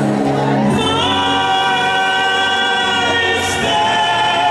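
A woman singing into a microphone over worship music, holding one long note from about a second in, with the congregation singing along.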